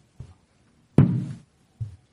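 A single sharp knock on a handheld microphone about a second in, with a couple of faint taps around it: the microphone being bumped and handled while a certificate folder is held up.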